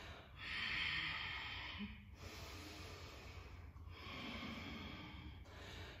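A woman breathing slowly and audibly in long breaths in and out, the first breath the loudest.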